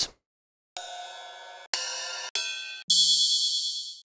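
Ride cymbal samples auditioned one after another in a DAW's sample browser: four single ride hits in turn, each cut off when the next begins. The last is the loudest and rings the longest.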